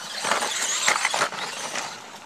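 Small electric RC truggy running over bark mulch and dirt: a rush of crunching and rattling with sharp clicks, swelling and loudest about a second in.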